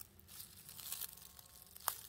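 Faint rustling and crackling of dry grass and twigs, stirred by a snake writhing under a rubber boot, with one sharp click near the end.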